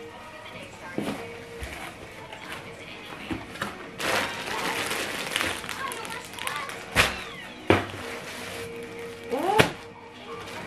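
A cardboard shipping box being opened and a plastic-wrapped garment pulled out, the plastic crinkling from about four seconds in, with a few sharp knocks in the second half. Background music plays throughout.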